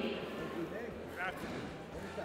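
Faint background of a large hall, with a low hum and murmur from the crowd; one brief, distant voice is heard about a second in.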